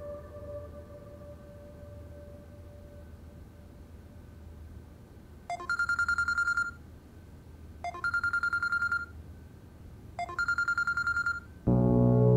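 A smartphone lying on a desk rings with a rapid trilling ringtone in three bursts of about a second each, a couple of seconds apart. Soft background music fades out before it, and louder music comes in just before the end.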